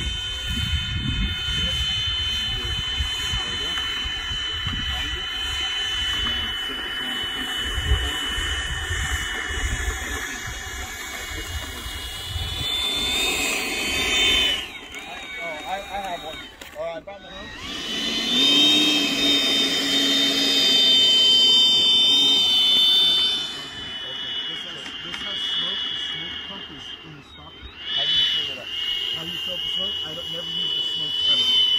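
The 80 mm electric ducted fan of a Freewing Avanti S model jet whines steadily as the jet taxis. The whine rises in pitch, breaks off and comes back louder, then dips briefly near the end. Wind rumbles on the microphone in the first third.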